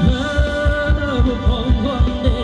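Thai ramwong dance music from a live band: a heavy kick drum at about four beats a second under a melody line with sliding, bending notes.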